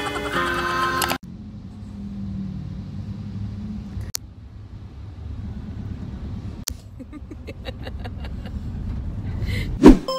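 A bright music track that cuts off abruptly about a second in, giving way to the low steady rumble of a moving vehicle heard from inside the cabin, broken twice by a sharp click. Near the end a loud sliding sound effect leads back into music.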